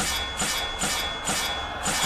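Soundtrack of the animated video: a regular pulsing beat about twice a second with a thud under each pulse and a steady high tone held over it.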